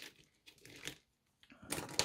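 The sun-embrittled plastic housing of a power strip crackling and crunching as it is handled and its shards shift. Faint crackles at first, a brief pause, then a louder burst of crackling near the end.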